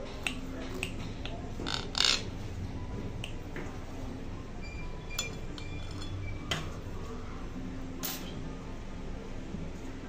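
Knife and fork tapping and clinking against a ceramic plate as a baked cake is cut into and a slice is worked free: a scattering of sharp clinks, the loudest about two seconds in.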